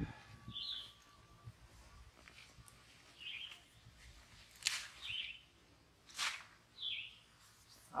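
A few short, faint bird chirps, spaced a second or two apart. A little past the middle come two brief rustles of soil and leaves as a potato plant is pulled up by hand.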